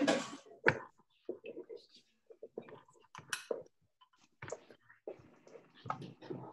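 Faint, broken snatches of voices and whispering mixed with a few sharp clicks and knocks from kitchen handling, heard over a video-call connection.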